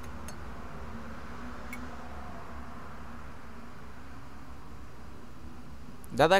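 Steady low background hum and hiss of room tone, with a couple of faint clicks in the first two seconds.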